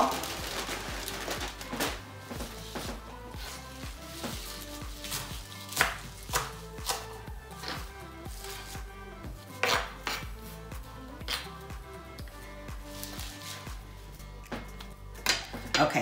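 Kitchen knife chopping kale on a cutting board: irregular strikes a second or more apart, over background music.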